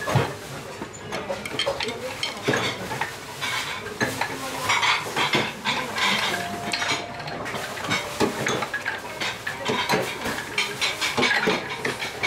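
Spoons and dishes clinking in a busy restaurant, in many short, irregular clicks of cutlery against plates.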